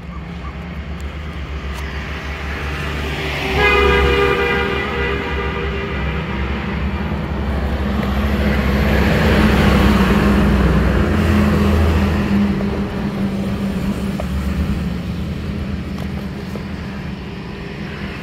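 Road traffic: a heavy vehicle's engine rumbles by, the noise swelling to its loudest about halfway through. A horn sounds steadily for about three seconds early in the passage.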